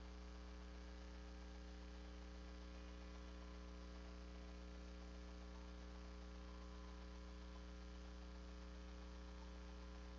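Steady electrical mains hum: a low hum with a ladder of higher overtones, unchanging throughout, with no other sound.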